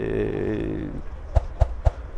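A man's voice holding a hesitant "eee" for about a second, fading out, then three sharp clicks in quick succession.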